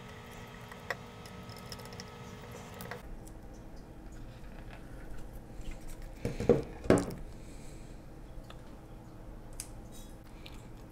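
Quiet handling sounds of a small screwdriver backing screws out of a camera's metal top plate, with a faint click about a second in and two sharper knocks at about six and a half and seven seconds.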